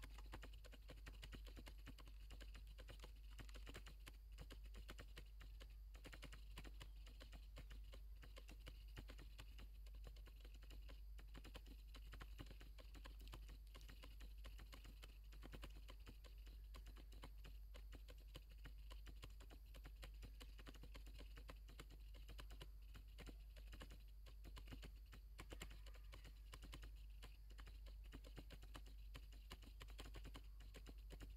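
Near silence: faint background ambience with light, irregular ticking and crackling throughout.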